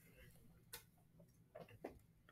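Near silence: faint room tone with a few brief, faint clicks.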